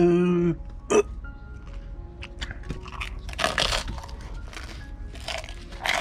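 A brief hum of voice, then mouth-close crunching and chewing of a bite of crisp toast, with louder crunches about three and a half seconds in and again near the end. Soft background music runs underneath.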